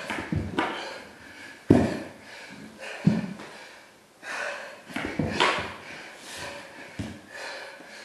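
A man breathing hard and panting from exertion while doing repeated burpees, with several heavy thuds of his hands and feet hitting a hardwood floor, the loudest about two and three seconds in.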